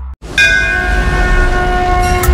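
Music of a channel-logo intro starting up: after a brief cut-off, a sudden loud bell-like hit comes in about a third of a second in, its several tones ringing on over a low rumble.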